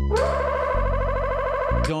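Trombone played through effects pedals, giving a synth-like, processed tone: a note slides up and holds with a fast, even warble over a deep bass line that steps to a new pitch about once a second. The music cuts off near the end.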